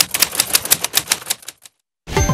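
Typewriter keystroke sound effect: a rapid run of sharp key clicks, about ten a second, stopping suddenly about 1.7 seconds in.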